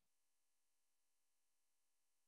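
Near silence: a pause between spoken phrases, with only a very faint steady hum.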